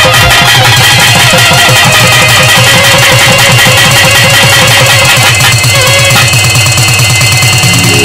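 Loud Tamil devotional band music: electronic keyboards over a fast, steady drum beat, with a held keyboard chord coming in near the end.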